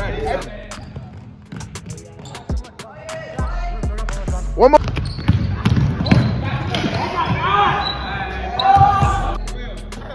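A basketball bouncing again and again on a hardwood gym floor as it is dribbled, in sharp irregular thuds, with players shouting over it in the second half.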